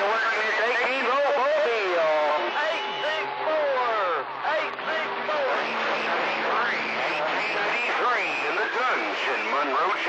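CB radio receiving several AM stations keyed up at once: overlapping, garbled voices talking over each other, with steady heterodyne tones where the carriers beat together.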